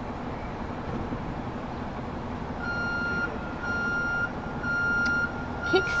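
An electronic beeper at one steady pitch, sounding long beeps about once a second and starting about halfway in, over steady street noise and a low hum.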